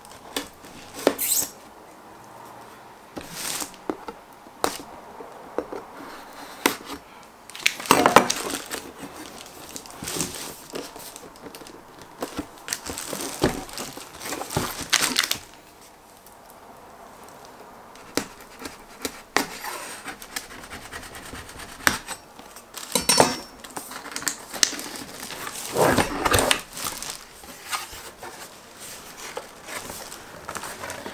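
Unboxing a keyboard: shrink-wrap plastic being cut with a knife, torn and crinkled, and the cardboard box scraped, knocked and opened by hand. The sounds come as irregular rustles and clicks, with a few louder crinkling bursts.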